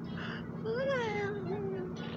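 A cartoon character's long, wordless, drowsy vocal sound, like a sleepy sigh or hum, rising slightly and then sliding slowly down in pitch.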